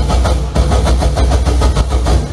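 Carnival street percussion playing a fast rhythm of sharp strokes over a loud, steady low drone. The drone stops just after the end.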